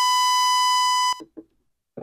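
FG-200 DDS function generator's 1 kHz sawtooth wave played through an audio amplifier and speaker: a steady, buzzy tone rich in overtones that cuts off suddenly a little past a second in, followed by a couple of faint clicks.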